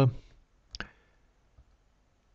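A single sharp click of a stylus tapping a pen tablet as a tick mark is drawn, a little under a second in, amid near silence.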